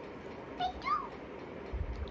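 Baby's two short high-pitched squeals, the second rising and falling in pitch, then a soft low thump near the end.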